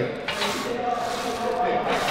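Smith machine bar carriage sliding along its guide rods during a press rep, a steady rubbing noise with a faint hum in the middle.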